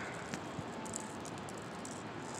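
Quiet outdoor ambience on a street: a steady faint hiss with a few faint clicks, and no distinct event.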